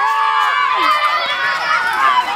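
A crowd of children shouting and screaming at once, many high voices overlapping in a continuous din.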